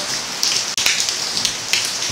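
Rain falling and splashing onto stone, heard from inside a stone corridor: a steady dense hiss with a few sharper drips.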